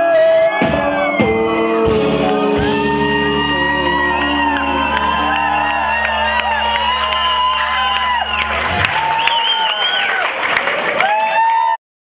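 Live rock band holding a chord on electric guitars and bass while the crowd cheers, whoops and shouts; the held chord stops about nine seconds in, the cheering goes on, and the sound cuts off suddenly near the end.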